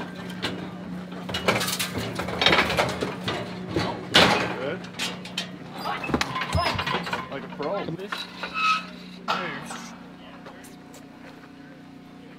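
Steel clanks and rattles of a manually operated Arrowquip Arrowlock 88 Series cattle squeeze chute as its headgate and squeeze are worked to catch a cow, with a few sharp knocks in the first half. Voices and a steady low hum run under it, and the hum stops about nine seconds in.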